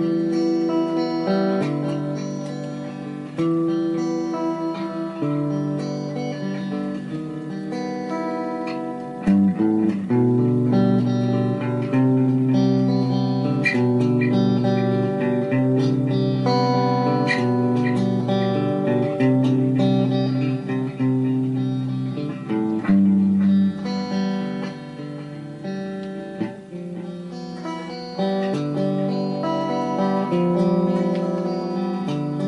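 Instrumental guitar music: a slow passage of sustained chords that change every second or two, with a deeper held chord through the middle.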